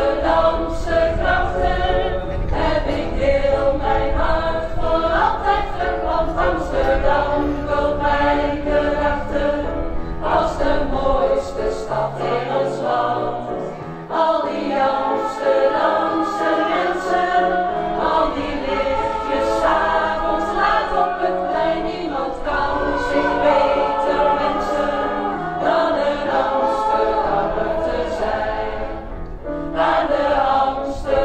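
A choir of mostly women's voices singing a song together, with keyboard accompaniment underneath.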